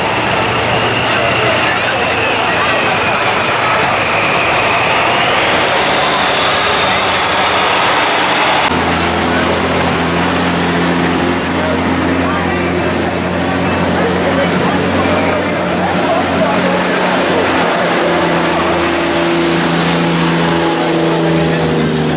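Engines of slow-moving vintage military vehicles running as they pass in a street parade, a low steady drone that comes in strongly about nine seconds in, over the chatter of a crowd.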